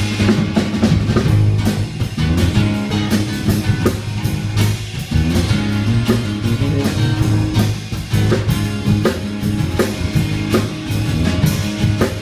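Live blues-rock band playing an instrumental passage: acoustic guitar and electric bass over a drum kit keeping a steady beat.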